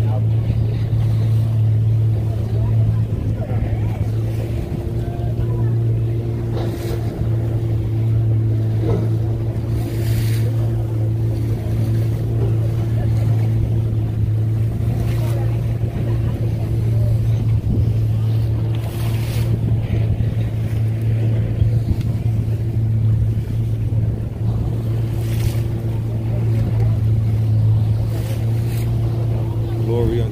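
Outboard motor of a wooden fishing canoe running at a steady speed with an even, unchanging hum, with water splashing against the hull now and then.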